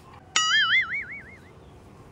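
A short wobbling 'boing'-like tone, of the kind added in editing: it starts suddenly about a third of a second in, its pitch warbling quickly up and down, and dies away over about a second.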